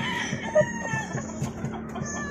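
A gamecock crowing: one long drawn-out call that ends about a second in.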